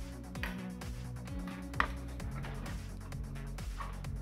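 Background music with steady low bass notes and a single short click near the middle.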